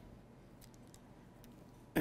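Near-quiet room tone with a few faint ticks as a metal fluted biscuit cutter is handled. At the very end there is a sudden knock as the cutter is pressed down through the biscuit dough onto the board.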